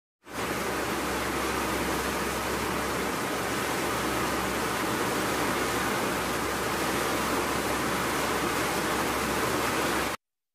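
Heavy rain pouring down in a steady, dense hiss.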